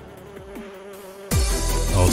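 Buzzing of a flying insect as a cartoon sound effect, a steady thin drone. About a second and a half in, background music with a deep bass comes in loudly.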